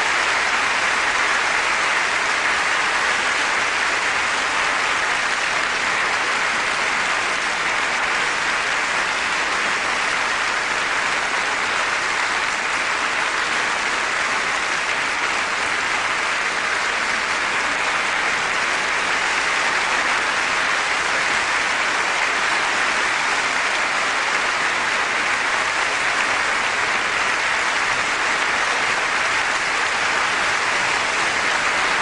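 A large concert-hall audience applauding steadily, a dense unbroken patter of many hands clapping.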